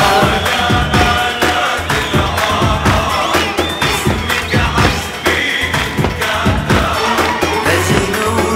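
Live band playing an upbeat Arabic pop instrumental passage with a steady drum beat and a melody line, with crowd noise underneath.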